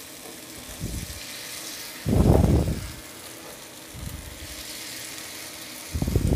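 Batter frying in oil in a kuzhi paniyaram pan, a faint steady sizzle, while spoonfuls of batter are dropped into its cups. A louder dull noise, lasting under a second, comes about two seconds in.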